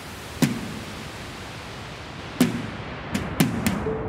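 A steady hiss broken by five sharp clicks or knocks, the first about half a second in and the last four bunched in the final second and a half. Each click has a brief low thud.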